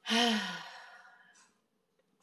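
A person's voiced sigh: a sudden breathy exhale whose pitch falls, fading out over about a second and a half.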